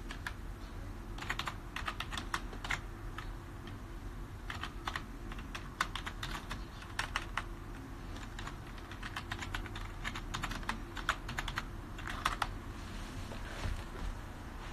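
Typing: irregular runs of quick clicking taps with short pauses between them, over a low steady hum.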